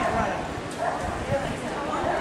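Indistinct voices of people talking, with a dog barking now and then.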